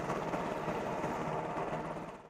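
MH-60R Sea Hawk helicopter running on the ground with its rotor turning: a steady twin-turboshaft whine over a fast, even rotor beat.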